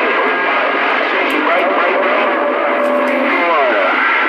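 Distant CB station received over skip through a Stryker CB radio's speaker: a steady wash of static and band noise with a muffled voice buried in it, too garbled to make out. A whistle glides downward near the end.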